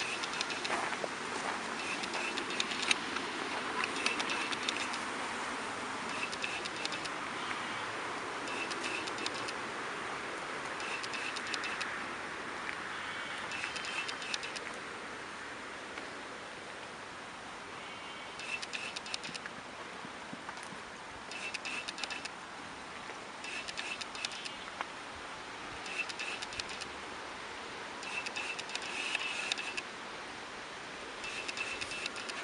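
Outdoor park ambience: a steady hiss with short bursts of small-bird chirping that come back every two to three seconds.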